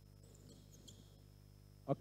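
Quiet basketball court ambience with faint sounds of players moving and a few brief, faint high squeaks about half a second in. A man's voice starts right at the end.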